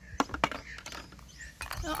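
Plastic toy food clicking and knocking against a clear plastic jar as the play picnic is packed away, with two sharp clicks in the first half second.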